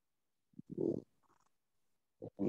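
A brief, low closed-mouth "mm" from a voice, about half a second long, a little after the start.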